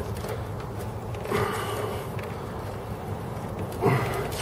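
Socket wrench working a stiff spark plug out of a Honda Steed's cylinder head, giving faint clicks and a brief scraping noise about a second and a half in. The plug is tight because it has not been removed for a long time.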